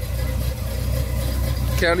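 Car engine idling with a steady low rumble.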